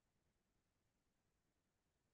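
Near silence: only a faint, steady noise floor.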